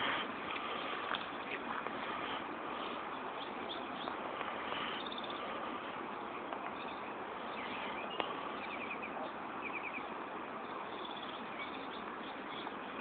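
Small birds chirping in a few short, rapid trills over a steady outdoor hiss, with a single sharp click about two-thirds of the way through.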